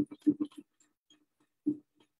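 Necchi HP04 electronic sewing machine sewing a triple stitch in short stop-start bursts of needle strokes: a quick run of clicks at the start and one more near the end.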